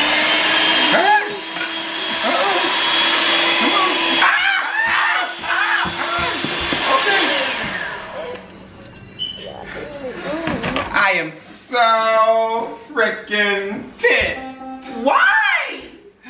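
Electric hand mixer running at one steady pitch, beaters spinning in the air, for about seven seconds before it cuts out, with shrieks and yells over it. Loud, drawn-out vocal cries fill the second half.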